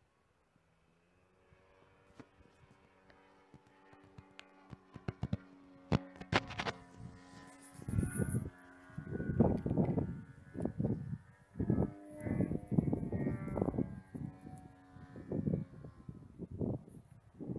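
DA-100 twin-cylinder gasoline two-stroke engine with canister mufflers on a large RC aerobatic plane, running steadily at a distance with a held pitch that slowly grows louder. From about eight seconds in, irregular low buffeting on the microphone is louder than the engine.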